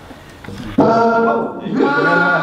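Several voices holding sustained sung notes together, like a small choir, starting abruptly about a second in, breaking off briefly and coming back.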